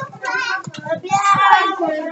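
Children's voices, with one child's voice rising loudest in a long sing-song line about a second in.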